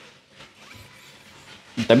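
A quiet pause with only faint, indistinct low-level sound, then a man starts speaking near the end.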